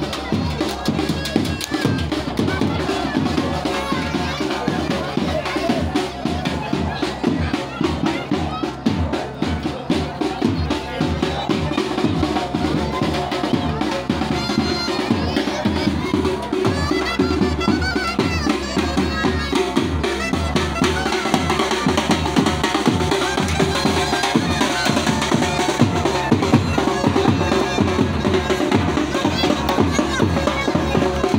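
Live wedding band music: bagpipes and a clarinet playing a melody over steady snare and bass drum beats, with crowd voices mixed in.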